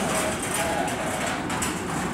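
A Kintetsu electric train approaching the station, heard from the platform as a steady rumble mixed with general platform noise.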